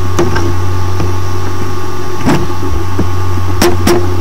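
A loud, steady low hum, broken by a few sharp clicks or knocks: one just after the start, one a little over two seconds in, and two close together near the end.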